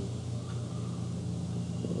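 Room tone in a pause of speech: a steady low electrical hum under faint even background noise.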